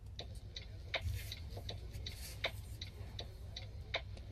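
Small hard clicks from a compact camera and its handheld shooting grip being handled, about a dozen at uneven spacing, over a low steady hum.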